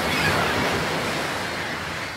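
Surf sound effect: an even, rushing wash of a wave that is loudest at the start and slowly fades away. It is used as a transition sting between segments.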